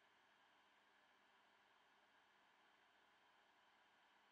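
Near silence: faint steady hiss of the recording's noise floor.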